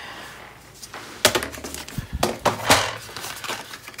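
Paper and cardstock being handled on a craft table: rustling with a few sharp taps, the loudest a little over a second in and again near the three-quarter mark.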